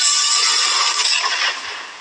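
Film soundtrack: a loud, dense swell of music and crashing destruction effects that drops away sharply about one and a half seconds in, leaving faint low booms of distant explosions.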